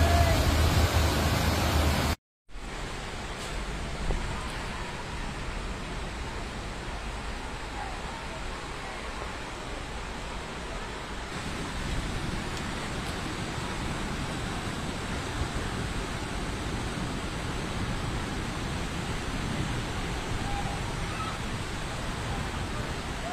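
Floodwater rushing in a torrent down a street, a steady even rush. It follows a louder low rumble of traffic in flooded water that cuts off about two seconds in.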